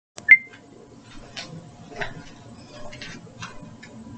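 A sharp click just after the start, then several softer knocks and rustles as someone moves about close to the microphone.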